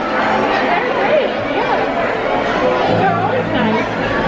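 People talking and chattering over one another in a busy restaurant dining room, with no clear words.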